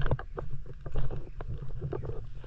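Footsteps scuffing and knocking on rocks along a boulder shore: several sharp, irregular knocks over a steady low rumble.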